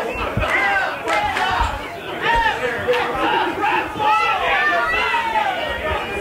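Wrestling crowd shouting and cheering, many voices overlapping, with a few dull low thuds in the first half.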